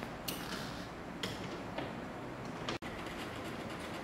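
Light handling noise from hands working the wiring of a training distribution board: a few short clicks and rustles, about four in all, over a steady low hiss. The sound cuts out for an instant just under three seconds in.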